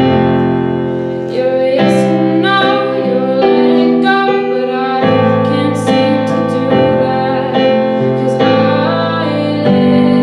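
Yamaha digital piano played live in sustained chords that change about every second and a half, with a woman's voice singing over it.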